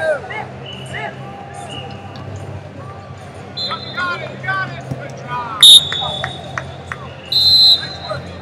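Referee whistles over shouting voices from coaches and spectators. A short, loud blast comes about two-thirds of the way through, and a longer blast near the end, when the bout is stopped and the wrestlers stand up.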